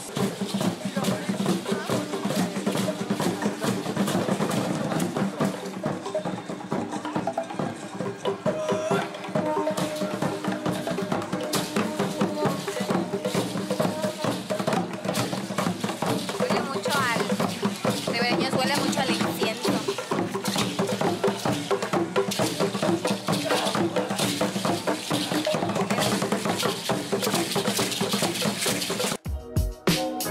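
Live drumming for a Maya-style ceremonial dance: a fast, steady run of drum beats with sustained tones beneath. It cuts off abruptly just before the end.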